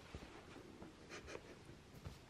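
Near silence: room tone with a few faint, brief rustles.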